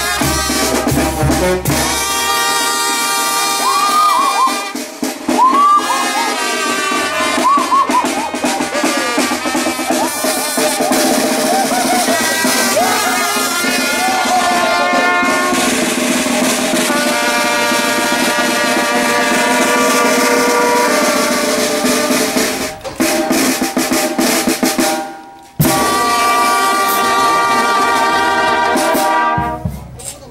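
Street brass band music: trumpets playing a melody together, with sliding scoops in the first few seconds, over snare drum. About 25 seconds in the sound cuts out briefly, then the band comes back with sousaphone and bass drum filling the low end.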